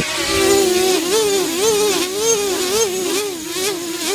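Hand-held quadcopter's brushless motors and propellers spinning at idle-up with Betaflight air mode on. Their whine wavers up and down several times a second as the flight controller makes aggressive corrections against the hand's movement.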